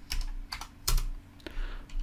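Computer keyboard keystrokes: a string of separate key clicks spread over two seconds, typing a radius value of 2.5 and pressing Enter in a CAD command line.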